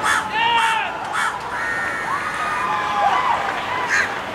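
Cricket players shouting in celebration as a wicket falls: a few short, loud cries in the first second, then longer cries around the middle.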